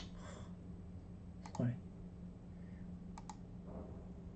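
Computer mouse button clicks: a few single sharp clicks spread out, with two in quick succession a little past three seconds in.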